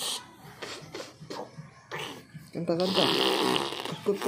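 A young boy giggling in short breathy bursts, then making a loud fart noise by blowing into his fist held at his mouth, lasting a little over a second near the end.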